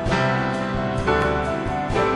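A small folk-jazz band playing an instrumental passage live, with guitar among the instruments; new chords and notes come in about once a second.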